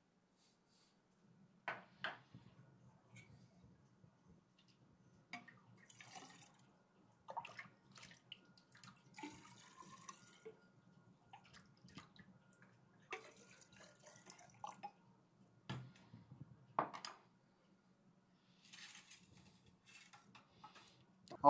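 Liquid being poured and dripping into a tall glass test cylinder, with a short rising tone as it fills and light clinks of glass being handled; faint overall.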